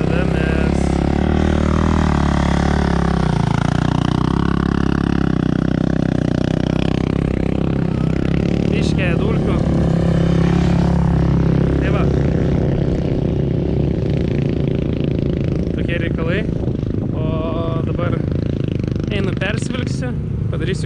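Several motocross bikes running on a dirt track, their engine notes rising and falling and overlapping as they rev and pass.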